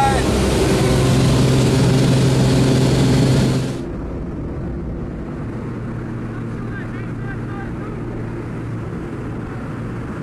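Jump plane's engine and propeller drone heard inside the cabin, a steady loud hum. About four seconds in it suddenly drops in level and turns duller, then carries on as a quieter steady drone with wind noise from the open door.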